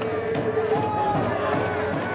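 Many voices shouting and calling at once, overlapping, with one long drawn-out call near the start: baseball players' shouts during fielding practice.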